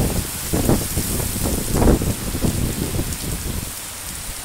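Heavy rain falling steadily in a storm, with gusts of wind buffeting the microphone in uneven low surges, the strongest about two seconds in.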